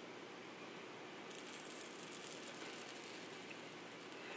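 Faint, irregular scratching of a thin metal pick working at the edge of a blush pan in a cardboard compact, starting about a second in, as the pan is pried loose from its glue.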